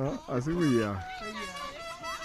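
People's voices calling out, without clear words: a voice that slides up and down in pitch in the first second, then a high, drawn-out call held through the second half.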